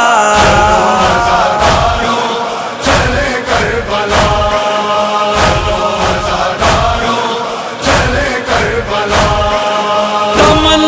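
Male voices chanting a Shia Muharram noha in long, drawn-out lines over a steady sharp beat, about three strikes every two seconds.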